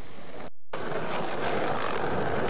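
Outdoor camcorder sound of a skateboarder stepping off his board, cut off by a brief dropout about half a second in, then a steady, louder rushing noise.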